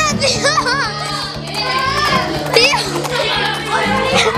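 Children's high-pitched voices calling out and chattering over steady background music.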